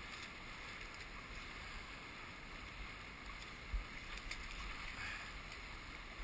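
Steady wash of wind and water noise aboard a sailing Hobie catamaran, with a low rumble and a brief low bump a little past halfway.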